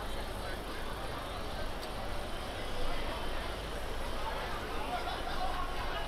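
City street ambience: passers-by talking and cars moving along the street, over a steady low rumble.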